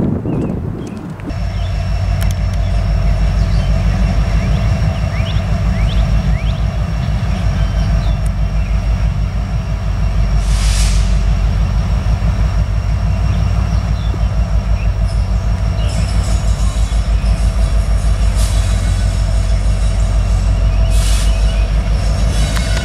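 A train's locomotive approaching head-on with a steady deep rumble and a high, steady whine. A short hiss comes about halfway through and again near the end.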